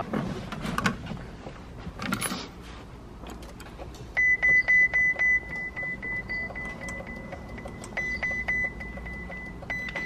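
Clicks and handling noise in a car cabin, then from about four seconds in a Ferrari 488 Spider's dashboard warning chime beeping rapidly and steadily at a high pitch, loudest at first. There is no cranking or engine running: this first attempt to start the car does not get the engine going.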